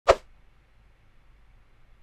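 A single short, sharp percussive hit right at the start, the sound effect of an animated channel-logo intro, dying away within a fraction of a second and followed by only a faint low background hum.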